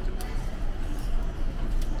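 A bite into a thin, charred-crust pizza and chewing: a few small crisp clicks from the crust over a steady low room rumble.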